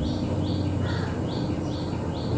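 A bird chirping over and over, short high chirps at an even pace of about two to three a second, over a steady low hum.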